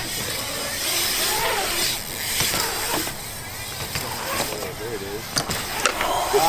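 BMX bike tyres rolling and carving on a concrete skatepark bowl, with two sharp clicks near the end as the bike knocks against the coping. Faint voices are heard in the background.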